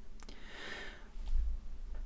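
A man's soft intake of breath between sentences, over a steady low electrical hum.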